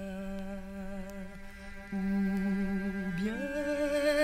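A male voice humming long held notes on one pitch, gliding up to a higher held note a little after three seconds in. Faint ticks of vinyl record surface noise lie beneath it.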